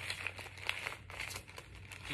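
Paper seed packets rustling and crinkling as they are handled, a run of small irregular crackles.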